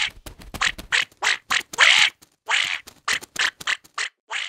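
Cartoon duckling quacking: a quick, uneven run of about a dozen short quacks.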